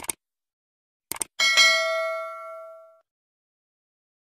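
Subscribe-button animation sound effect: a click, then a quick double click about a second in, then a bell ding that rings and fades out over about a second and a half.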